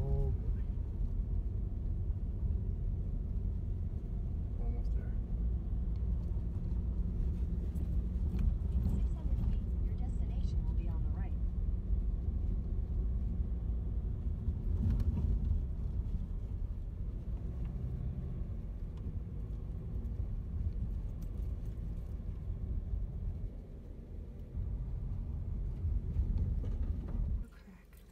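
Car cabin noise while driving on an unpaved, snowy mountain road: a steady low rumble of engine and tyres that falls away shortly before the end.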